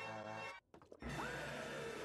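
Chopped cartoon soundtrack from a SpongeBob YouTube Poop. A held, evenly pitched tone cuts off sharply about half a second in. After a brief silence comes a long frightened cry from SpongeBob that rises, holds and then sags.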